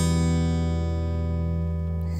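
Acoustic guitar chord ringing out and slowly fading, the instrumental intro of a song.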